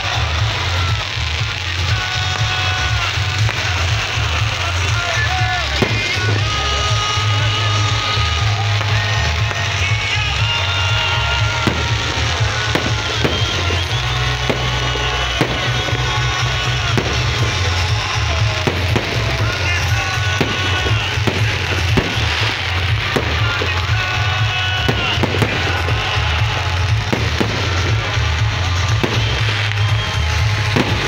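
Loud amplified music with a heavy bass beat, over which fireworks go off in repeated sharp bangs and crackles, coming thicker in the second half.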